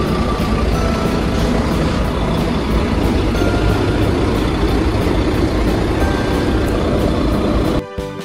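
Loud, steady street traffic noise: a large vehicle, bus or truck, running close by. It cuts off suddenly near the end.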